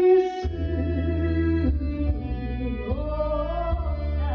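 A woman singing into a microphone over a karaoke backing track, holding long notes with a wavering vibrato near the end.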